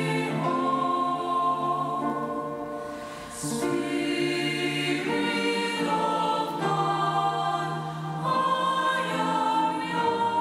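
Mixed choir singing a slow hymn in long held chords that change every second or two, with a short dip in loudness and a sung 's' about three seconds in.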